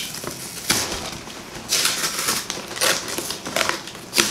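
Cardboard shipping box being pried open by hand, its flaps scraping and crackling in a few short bursts, the longest about two seconds in.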